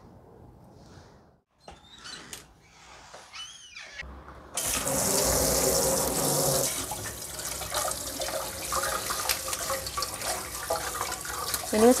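Kitchen tap running into a stainless steel sink and a steel pot while leafy greens are rinsed under it by hand. The water comes on suddenly about four and a half seconds in and runs loud and steady; before that there are only a few faint clicks and rustles.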